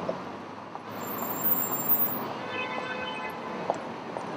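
City street traffic at an intersection: a steady hum of passing vehicles. A thin high squeal comes about a second in, and a short pitched note near three seconds.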